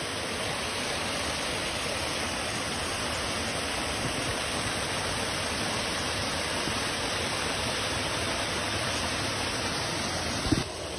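Small creek cascade spilling over a stone ledge into a pool: a steady, even rush of falling water.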